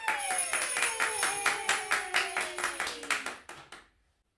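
A few people clapping their hands quickly, the claps thinning out and stopping near the end, while a long voice slides down in pitch underneath.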